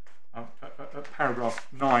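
Speech: a barrister addressing the court, starting about a third of a second in after a brief pause.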